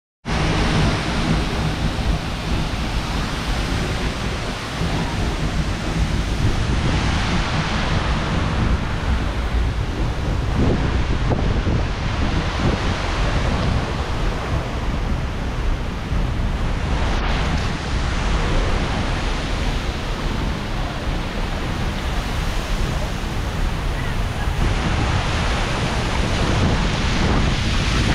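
Seljalandsfoss waterfall's water pouring down close by, a loud steady rush with no let-up, with wind and spray buffeting the microphone.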